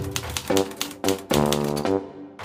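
Typewriter keys clacking, about four or five strikes a second, as text is typed out, over music with held notes; a new chord comes in about two-thirds of the way through.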